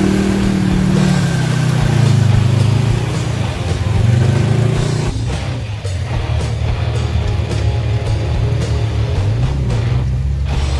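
Side-by-side UTV engine revving and changing pitch while the machine sits stuck in deep mud. From about five seconds in, rock music with a steady beat takes over, with engine running beneath it.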